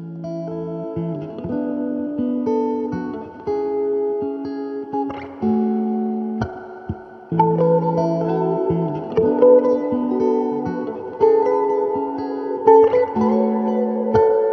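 Electric guitar playing a slow, peaceful ambient melody of picked, ringing notes layered over a looped phrase. It grows louder and fuller about seven seconds in as more layers join.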